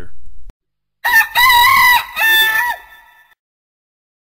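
A rooster crowing once, loud and clear, starting about a second in: a short opening note, a long held note, then a dropping final note that dies away about three seconds in.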